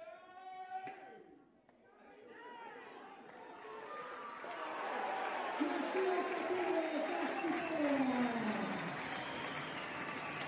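Players and spectators cheering and shouting at a pesäpallo game, the noise building from about two seconds in and staying loud. Before it, a held shout and a single sharp knock about a second in.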